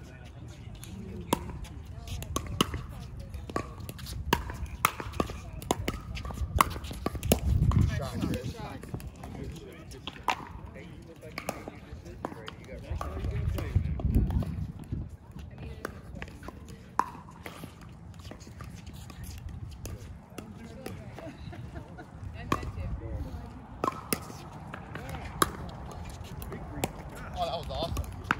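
Pickleball paddles striking the ball, sharp hollow pops at irregular intervals, with quiet voices between them. Twice a low rumble swells up, once about a quarter of the way in and once near the middle.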